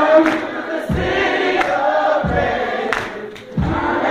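Gospel choir singing in a church, with a low beat about every second and a half under the voices. The singing dips briefly about three seconds in, then picks up again.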